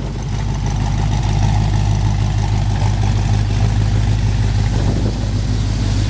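The 1955 Chevrolet Bel Air's 327 V8, fitted with chrome headers, idling steadily. It grows a little louder about a second in and then holds even.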